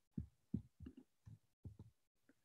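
Faint, short low thumps at the microphone, about seven in two seconds and unevenly spaced.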